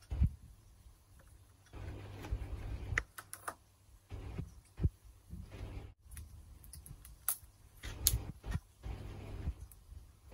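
Irregular sharp plastic clicks and knocks from handling a water filter housing, its ring wrench and cartridge, with low rumbling handling noise between them.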